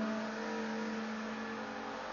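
A strummed guitar chord ringing out and slowly fading, a few steady notes held over a faint hiss.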